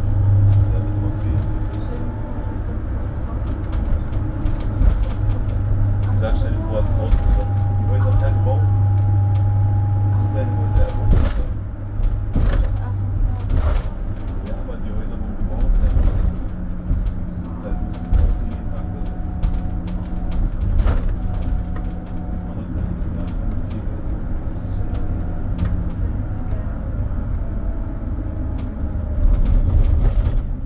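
Mercedes-Benz Sprinter City 45 minibus driving, heard from inside the cab: a steady engine hum and road noise, with occasional short knocks and rattles from the body.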